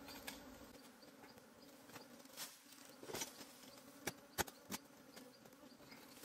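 Honeybees buzzing in a low, steady hum around their nest, with several sharp knocks of a hoe blade digging into the earth, the loudest a quick run of three about four seconds in.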